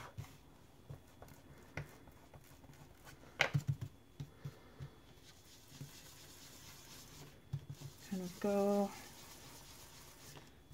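Faint dabbing and soft taps of a handled ink-blending tool sponging Distress Ink onto a cardstock panel, with a quick cluster of knocks about three and a half seconds in. A short hummed voice sound near the end.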